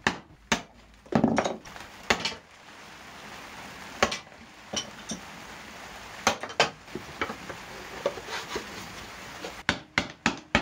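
Plywood being knocked and worked by hand: a quick run of sharp wooden taps as the waste is chopped out between bandsaw cuts, then a stretch of scraping with scattered clicks as the interlocking plywood pieces are slid together, ending in a few more knocks.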